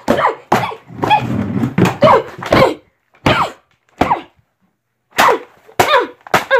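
A boy's short, wordless angry yells and grunts in a rapid string of bursts for about three seconds, then a few more scattered outbursts after a brief pause.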